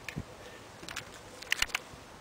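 Faint background hiss with a few small clicks: one just after the start and a short cluster of clicks about one and a half seconds in.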